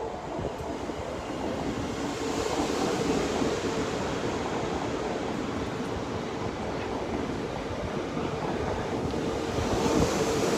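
An NS ICNG (Alstom Coradia Stream) electric multiple unit passes with a steady rumble of wheels on rail, growing slowly louder. A steady hum comes in about two seconds in and holds.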